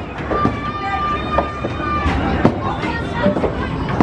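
Skee-Ball balls rolling up the lanes and knocking into the scoring rings, over a low rumble of arcade din. A steady pitched tone holds for almost two seconds in the first half, and voices chatter in the background.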